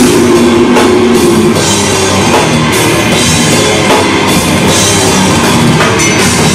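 Heavy metal band playing live: distorted electric guitars riffing over bass and a pounding drum kit, loud and dense.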